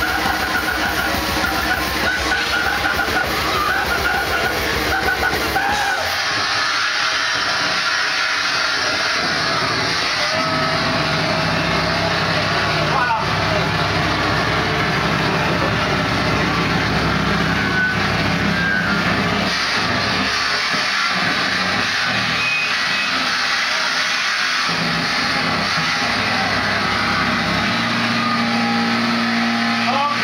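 Live grindcore band playing distorted guitar and fast drums; the song stops about six seconds in. After that come held, droning notes and noise from the amplifiers between songs, with voices in the room.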